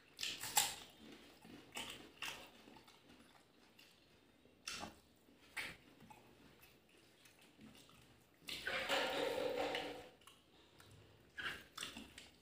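Close-miked mouth sounds of a person eating rice and curry by hand: short wet smacks and clicks of chewing at irregular intervals. There is a longer, louder sound for about a second and a half past the middle.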